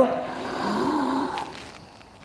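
A man's deep, audible in-breath drawn through the throat, a soft hiss with a faint hum in it, fading out after about a second and a half.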